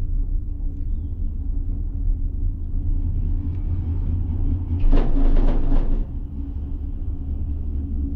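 Monocable gondola cabin running along the haul rope with a steady low rumble. Just after the middle it gets louder and harsher for about a second as the cabin passes over a lift tower's sheave wheels.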